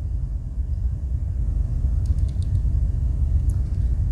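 A steady low rumble, with a few faint light clicks about two seconds in and once more near the end as the corkscrew of a Victorinox Swiss Army knife is folded shut.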